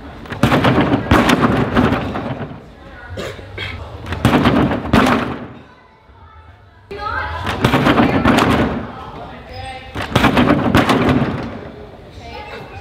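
Thuds of a gymnast's practice landings on a springboard and a sprung tumbling strip, echoing in a large hall. They come in four bouts about three seconds apart.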